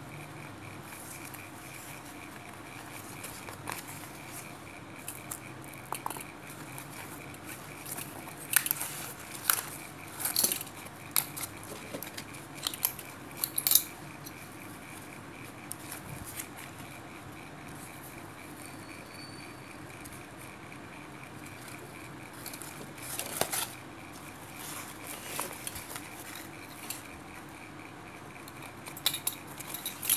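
Scattered light clicks and clinks of metal binder clips and a zipper pull being handled while fabric lining is smoothed and clipped in place, with a cluster of clicks about a third of the way in. A faint steady high whine runs underneath.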